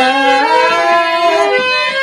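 Harmonium playing a short melodic phrase of held notes that step up and down in pitch, between sung lines.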